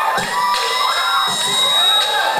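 Audience cheering and shouting, many high voices overlapping, with a steady high whistle-like tone held through the second half.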